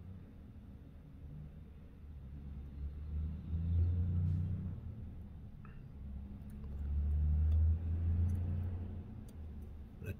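A low rumble that swells up twice and fades away again.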